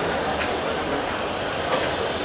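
Passenger train carriages rolling along the track: a steady rumble of wheels on rails with a couple of faint clicks over the rail joints.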